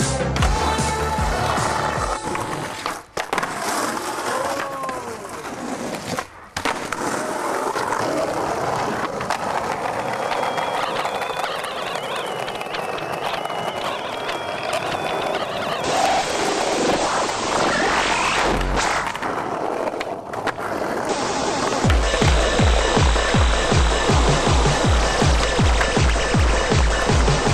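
Skateboard sounds: wheels rolling on concrete and paving, with the board working a metal rail and ledges, cut together in short clips. Music with a steady beat comes in about 22 seconds in.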